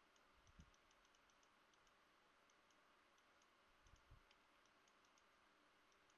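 Near silence with faint, quick clicking of a computer mouse used for painting strokes, and two soft low thumps, about half a second and four seconds in.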